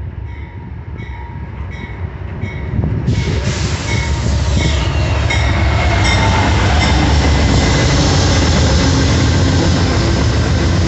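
Amtrak train hauled by two GE Genesis P42DC diesel locomotives passing close by: diesel engine rumble and wheels running on the rails, growing much louder from about three seconds in as the locomotives come alongside, then staying loud as the cars roll past.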